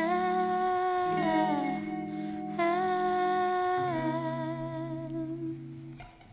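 Short musical intro jingle: a melody of long held notes that slide smoothly between pitches over sustained low notes, dying away near the end.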